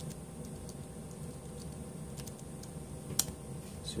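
Typing on a computer keyboard: sparse, faint key clicks, with one sharper click about three seconds in, as a remote connection to a Raspberry Pi is being opened.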